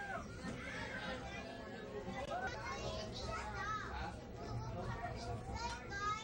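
Children's voices and chatter from a crowd of passengers in a train car, over a steady low rumble.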